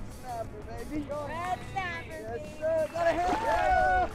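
Excited voices calling out, mixed with background music, over a steady low rumble; the voices grow louder near the end as the fish reaches the surface.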